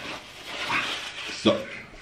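A man huffing and breathing into a paper towel held over his mouth and nose, with the towel rustling, then one short throaty sound about one and a half seconds in.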